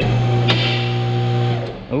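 Vehicle lift's electric hydraulic pump motor running with a steady hum while raising the car, with one sharp click about half a second in. The hum stops near the end.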